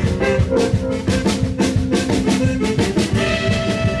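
Live band with drum kit, saxophone, fiddle, accordion and electric guitars playing an instrumental passage over a steady drum beat. About three seconds in, a new higher held note comes in.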